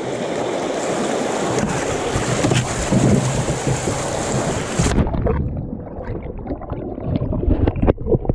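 Rushing white water as a kayak runs a chute through a concrete weir, growing louder. About five seconds in, the sound suddenly goes dull and muffled as the camera plunges underwater when the kayak goes over, leaving low gurgling and knocks.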